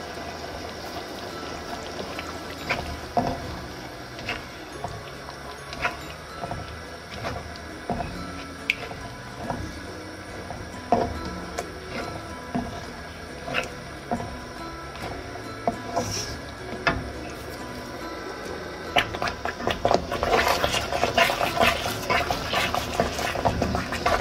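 Quiet background music over simmering semolina halwa in a wok, with occasional clicks of a spatula against the pan. From about five seconds before the end the stirring and scraping become louder and busier as the halwa thickens.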